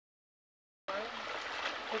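Silence for nearly a second, then a steady rushing background noise, with a man's voice starting just at the end.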